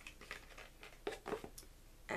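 Faint rustling and a few light clicks of small items being handled in a box, with a few clicks together a little past the middle.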